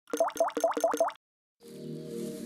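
Five quick bloop sound effects in a row, each rising in pitch, about five a second. After a short silence, soft music with held notes begins near the end.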